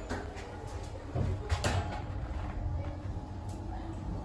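Elevator car descending, its ride giving a steady low hum, with a short clatter of clicks about a second and a half in.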